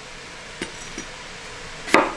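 Chef's knife cutting through a peeled raw potato and knocking on a wooden cutting board: two light taps about a second in, then a sharper knock near the end.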